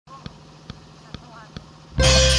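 Four evenly spaced sharp clicks, a little over two a second, over faint background voices.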